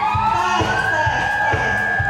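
Live band music with a steady drum beat: a voice slides up into a long held high note while the crowd cheers.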